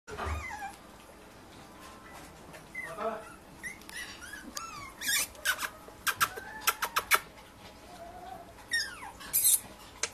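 Young Staffordshire bull terrier puppies whimpering and squeaking in short, high, rising-and-falling whines, with several sharp clicks in the middle and near the end.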